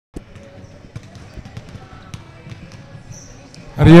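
Basketballs bouncing on a wooden gym floor in a large hall: scattered, irregular thuds at a fairly low level, with faint voices around. A man's voice starts loudly near the end.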